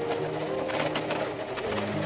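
Electric sewing machine running steadily, stitching through layered denim with a rapid needle rhythm.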